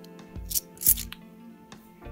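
Background music with a steady beat, and two brief metallic scrapes as bimetallic £2 coins slide against each other off a stack held in the hand.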